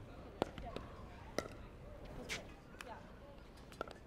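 Pickleball paddles striking a hard plastic pickleball in a soft dinking exchange at the net: a sharp pop about once a second, five in all.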